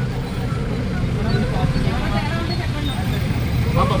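Indistinct voices over a steady low rumble of vehicle engines and road traffic.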